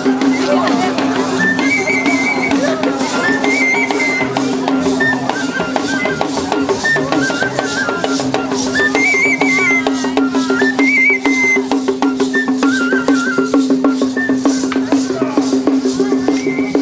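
Parade music: a high piping melody in short trilled phrases over a steady held drone, with rattles shaken in a fast, even rhythm.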